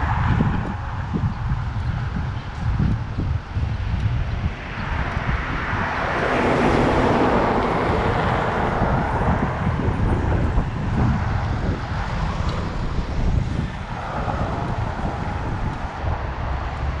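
Wind noise on the microphone of a camera moving along a street, over road traffic. A louder rush of passing traffic builds about five seconds in and fades by about ten seconds.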